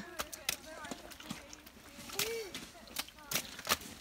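Children in rubber wellington boots stamping and jumping in a shallow muddy puddle on a gravel path. The result is an irregular series of short splashes and slaps of boots hitting wet ground.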